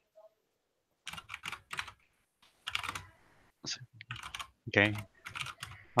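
Computer keyboard being typed on: two short runs of keystrokes, starting about a second in and again around three seconds in.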